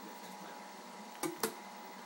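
Quiet small-room background: a steady faint hiss and hum, broken by two short clicks in quick succession a little past the middle.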